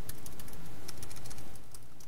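Computer keyboard being typed on: a quick, irregular run of key clicks that stops about one and a half seconds in.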